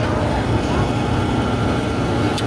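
Steady, even running noise of a Lincoln 1000 gas oven's blower fan, heavy in the low range, with no clicks or other events over it.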